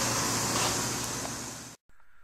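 Steady hiss with a low hum from running machinery, fading and then cutting off sharply near the end.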